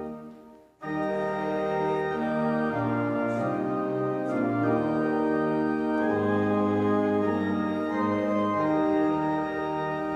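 Church pipe organ playing sustained chords that move from one to the next. The organ breaks off briefly at the start, then comes back in after about a second.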